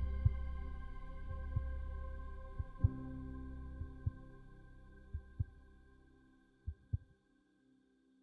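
Heartbeat sound effect over a soft held music chord: deep thumps, several in close lub-dub pairs, under a sustained tone that fades away, with the last beats about seven seconds in.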